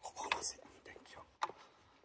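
A person whispering softly in short breaths of sound, with one sharp click about halfway through.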